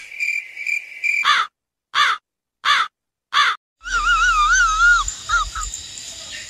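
Four short cawing calls like a crow's, evenly spaced about two-thirds of a second apart with silence between them. From about four seconds in, a wavering, warbling pitched tone follows. A steady high tone from the music before the calls cuts off about a second in.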